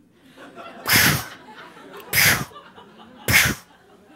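A woman imitating gunshots with her mouth into a close microphone: three sharp, breathy bursts about a second apart, mock shots from a finger gun.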